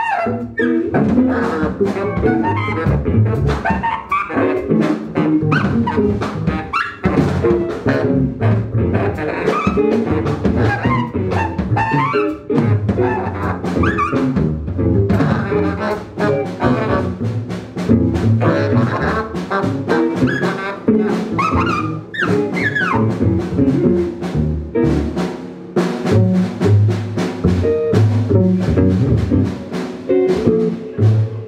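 Live jazz band playing: saxophone over double bass, drum kit and electric guitar, with busy drumming throughout.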